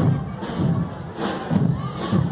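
Marching parade drum band playing: bass drum beats about twice a second with cymbal or snare hits between them.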